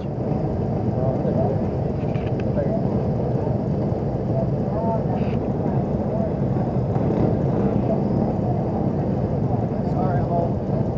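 Steady low rumbling noise, with faint voices now and then.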